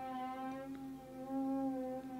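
Loud drilling from somewhere nearby: a steady humming motor whine that holds one pitch, wavering slightly and swelling a little in the middle.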